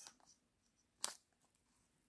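Near silence: room tone, with one brief sharp click about a second in.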